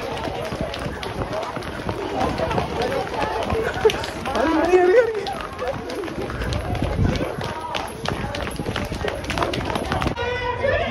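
Footsteps of a crowd running on pavement, a rapid run of light impacts, with indistinct voices among them.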